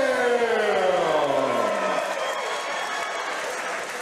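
A ring announcer's long, drawn-out call over the PA, one held note sliding slowly down in pitch and ending a little under two seconds in. A cheering crowd carries on under and after it.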